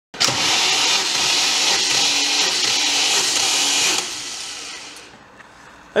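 Rover V8 turned over on its starter motor for a compression test: a steady whir for about four seconds that then winds down and fades.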